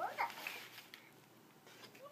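A toddler's short, soft vocal sound rising in pitch right at the start, then near quiet.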